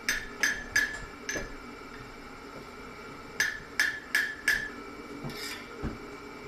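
Hand hammer striking a red-hot steel lock shackle over the horn of an anvil, shaping its bend, each blow ringing. Four blows, a pause of about two seconds, four more, and a softer knock near the end.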